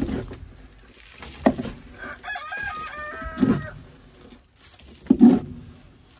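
A chicken calls once with a stepped call of about a second, roughly midway. Around it come a few sharp knocks and scrapes of a metal shovel working in the wood shavings of a nesting box.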